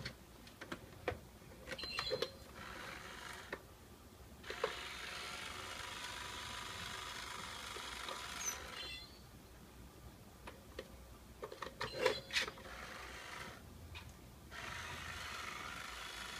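Itazura cat coin bank's small geared electric motor whirring in stretches as the toy cat lifts the box lid and draws back. It runs briefly early on, then for about four seconds, then again near the end. Between the runs come scattered clicks and knocks on the box, loudest about three-quarters of the way through.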